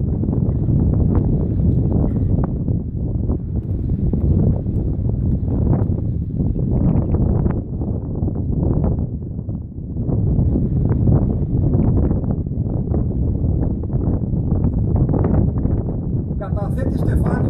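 Wind buffeting the microphone: a loud, irregular rumble with short crackles, dipping briefly about two-thirds of the way through.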